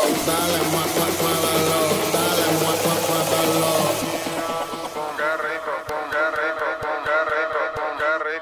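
Dance music mixed live on a Pioneer DJ controller. About halfway through, the treble fades out, leaving a sung line over sparse percussive clicks.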